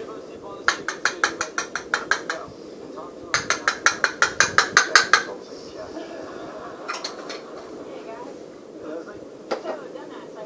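Plastic pill crusher tapped rapidly against a small plastic medicine cup to knock the crushed tablet powder out: two runs of about six taps a second, each about two seconds long, then a couple of single taps.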